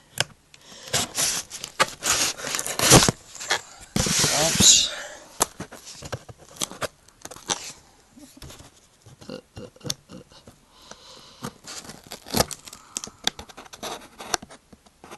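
Scissors cutting and scraping at a cardboard box and its packing tape, with handling clicks and knocks. Longer noisy scraping strokes come in the first few seconds, then lighter clicks and scrapes.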